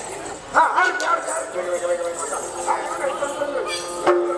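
A man's voice making wordless, bark-like cries that start about half a second in, with one sharp clap about a second in and a longer held cry in the middle.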